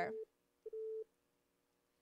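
Telephone line tone over a call-in phone line: a steady beep a little below 500 Hz sounding twice, like a busy signal, about half a second apart, ending about a second in. The newly switched-over caller line has not connected to a voice.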